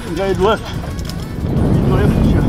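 A man's short laugh near the start, over a steady low rumble of wind and water that grows louder in the second half.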